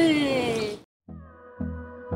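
A toddler's drawn-out vocal sound, falling in pitch, cut off abruptly under a second in. After a brief silence, soft music starts with a low pulse.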